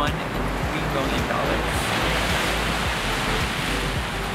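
Steady wash of surf on the shore at the ocean's edge, a continuous rushing noise that swells slightly in the middle.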